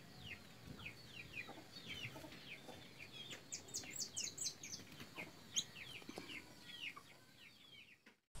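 Birds chirping faintly in the background: a steady string of short falling chirps, several a second, with a run of higher, quicker notes around the middle.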